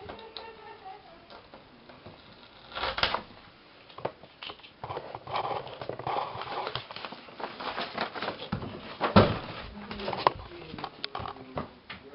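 Handling noise from a handheld camera being moved around at close range: rustling, scrapes and small bumps, with sharp knocks. The loudest knocks come about three and nine seconds in.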